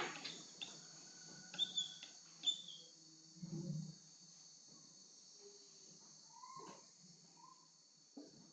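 Whiteboard marker squeaking faintly on the board in short strokes as zigzag lines are drawn, with a few squeaks in the first three seconds and again near the end.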